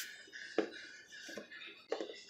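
Plastic spice jar of dried Italian seasoning being shaken out, with three short sharp taps as it is shaken and knocked.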